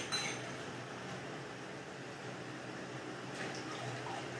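Dishwashing at a kitchen sink: a steady stream of running water with a few light clinks of dishes, under a faint low hum.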